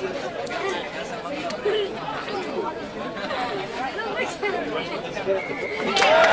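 Many overlapping voices in indistinct chatter and calls, with no clear words, from rugby players at a scrum and spectators along the sideline.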